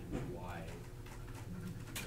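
Faint, indistinct voices of students murmuring in a classroom, over a steady low electrical hum.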